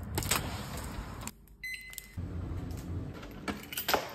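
Keys jangling and a door lock and handle clicking as a front door is unlocked and opened. A short electronic beep comes about a second and a half in.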